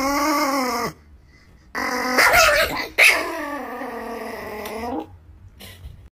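Dog-like growling and whining vocal calls, three in a row: a short one at the start, then two longer ones with wavering pitch, loudest around the second and third seconds.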